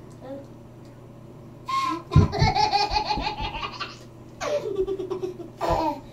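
A toddler laughing: quiet at first, then a long run of pulsing giggles from about two seconds in, followed by more bursts of laughter toward the end, one of them sliding down in pitch.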